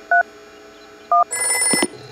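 Mobile phone keypad touch-tone beeps, two short two-note dialing tones about a second apart, followed by a brief electronic ring lasting about half a second as the call connects.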